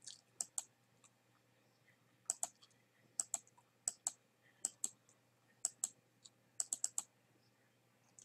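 Computer mouse button clicking repeatedly, the sharp clicks often coming in quick pairs: double-clicks.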